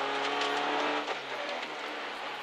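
Renault Clio rally car's four-cylinder engine heard from inside the cabin, holding one steady note that fades out a little past halfway, over a constant hiss of road and tyre noise.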